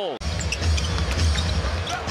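Basketball game sound in an arena, cutting in abruptly just after a brief dropout: a ball dribbling on the hardwood court over crowd noise and music with a heavy bass over the arena speakers.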